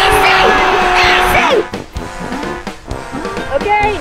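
A long held shout of 'goooal!' over a wash of crowd cheering, a goal sound effect, that drops off and ends about one and a half seconds in. After it, light background music plays.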